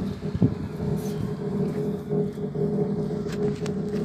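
Steady mechanical hum inside a moving gondola cable car cabin, with a few light knocks at the start and again near the end.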